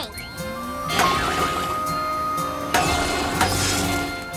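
Cartoon sound effects of the rocket rock and solar seeds going into a robot's fuel-mixing tank: a short rising swoop, then two bursts of clattering noise, about a second in and near the three-second mark. Background music with held notes plays throughout.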